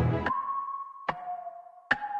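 A dense music track cuts off just after the start and gives way to steady electronic beep tones, each a single held pitch. A sharp click comes about a second in, where the tone drops lower, and another click comes near the end.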